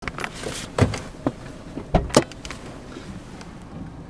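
Clicks and knocks of a camera being handled and moved about inside a parked car, over a faint steady background; the loudest knock comes about one second in and two more close together around two seconds in.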